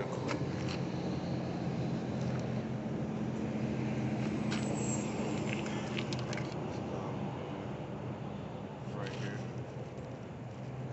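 A steady low motor hum with a few light clicks and ticks over it.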